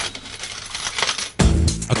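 Coins clinking and spilling, a money sound effect. About one and a half seconds in, music starts with a deep low note.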